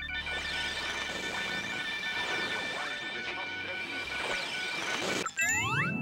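Whirring, whooshing sound effect for a toy radio globe being spun: a steady whoosh with warbling tones that cuts off about five seconds in. A short rising flourish follows as the globe stops on a new country.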